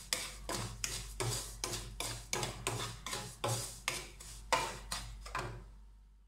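A bamboo spatula scraping and stirring semolina around a nonstick pan as it roasts, in quick repeated strokes of about three a second that fade away near the end.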